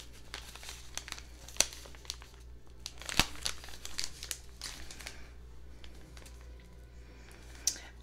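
Crinkling and rustling of tea-bag packets being handled, with two sharp clicks about one and a half and three seconds in; the handling thins out in the second half.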